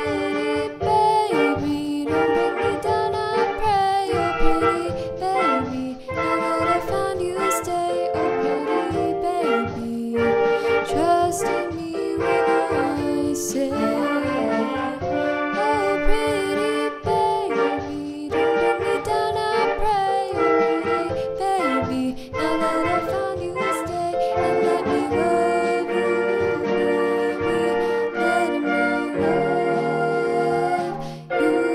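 A girl singing a song over instrumental backing with a steady beat.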